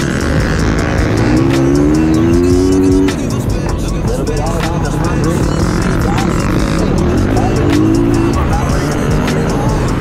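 Flat-track racing motorcycle engine heard from the rider's onboard camera. Its pitch climbs under throttle for about two seconds, then drops off sharply about three seconds in as the throttle is let off, and climbs again briefly near the end.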